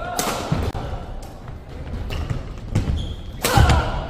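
A badminton rally on a wooden gym floor: sharp racket strikes on the shuttlecock, starting with a jump smash just after the start. Thudding footsteps and short shoe squeaks run between the strikes, all echoing in the hall. The loudest impacts come near the end.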